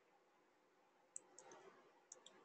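Faint computer keyboard keystrokes: three or four quick key clicks starting about a second in, typing into a text field.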